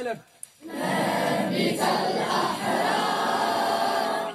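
A large group of boys singing together in unison, starting just under a second in and holding at a steady level.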